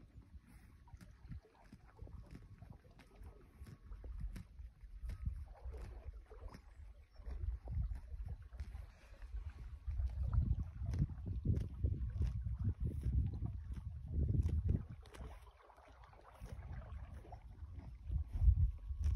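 Horse grazing close to the microphone: grass tearing and chewing as irregular short snaps, over a low wind rumble on the microphone that strengthens partway through.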